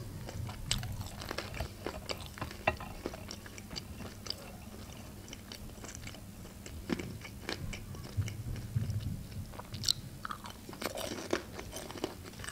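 Close-miked chewing of pan-fried pelmeni, with scattered short crisp clicks and mouth smacks as the browned dumplings are bitten and chewed.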